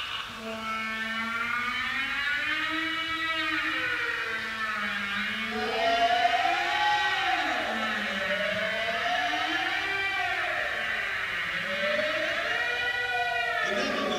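Live rock band on an audience recording, playing long wailing tones that slide slowly up and down in pitch, two or three at a time, cresting every few seconds.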